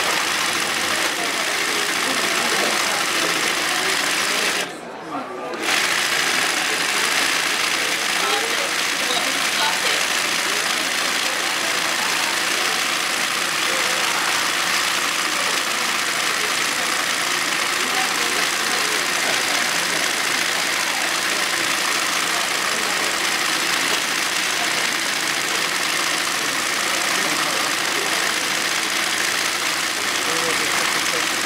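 Yokofuri (side-swing) embroidery sewing machine running steadily as it stitches, stopping briefly about five seconds in and then running on. Voices can be heard in the background.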